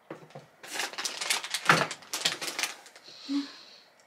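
Banana being eaten up close: a dense run of small wet clicks and smacks for about two seconds, then a short breathy puff of air.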